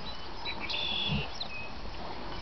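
Birds chirping in short, high notes over steady outdoor background noise, with a brief low falling sound just after a second in.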